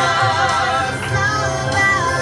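A gospel song sung by a family: a girl singing into a microphone, joined by a woman and a man, with steady low accompaniment underneath.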